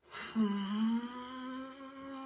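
A person humming one long note that slowly rises a little in pitch, starting about a third of a second in.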